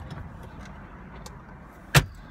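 Low steady rumble inside a car, with a few faint small clicks and one sharp knock near the end.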